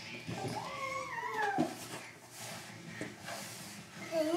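A toddler's high-pitched drawn-out squeal, about a second long, rising slightly and then sliding down in pitch.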